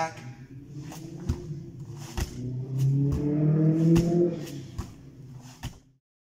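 Bare feet and hands thumping on foam grappling mats during squat-jump 'frog' drills, the feet jumped back and forward, about ten thumps at uneven spacing. Under them a low drone rises slowly in pitch, loudest in the middle, and everything fades out just before the end.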